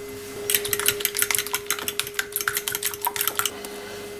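Metal fork whisking eggs and milk in a porcelain bowl, clinking rapidly against the sides and bottom for about three seconds, starting about half a second in.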